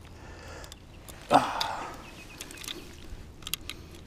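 Soft handling sounds of hands pulling wet weed off a fishing lure: small clicks and rustles, with one short, louder breathy rush about a second in.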